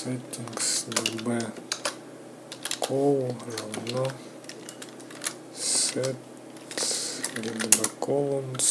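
Typing on a computer keyboard: irregular key clicks as a line of code is entered.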